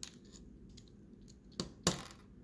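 Plastic Lego bricks clicking as a small Lego safe is pulled apart by hand to take its locking mechanism out: a few sharp clicks, the loudest near the end.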